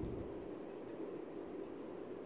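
Faint, steady room noise with a low hum and hiss in a pause between speech; no distinct sound.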